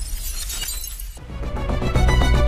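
A glass-shattering sound effect fading away, then background music with a deep bass and a steady beat starting just over a second in.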